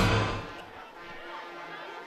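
Broadcast replay-transition sound effect: a rushing swoosh that accompanies a team-logo wipe and fades away within about half a second. It is followed by a faint background.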